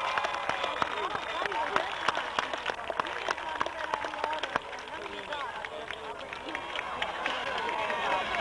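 Football stadium crowd: many voices talking and calling at once, with scattered claps.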